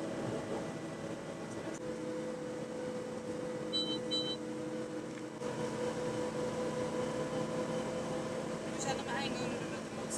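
Steady engine drone heard inside a vehicle cabin, with two short high electronic beeps about four seconds in.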